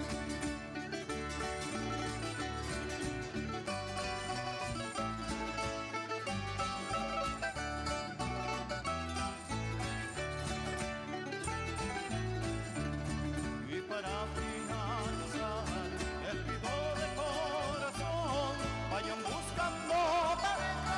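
Canarian folk string ensemble of guitars and smaller mandolin-like plucked strings playing a berlina, a traditional La Palma dance tune, with a steady strummed rhythm and bass. Voices come in singing about two-thirds of the way through.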